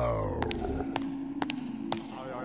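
Cartoon sound effects: a pitched tone slides downward and dies away, then a low held note sounds under a few light, sharp footstep clicks about once a second as the cartoon squid walks.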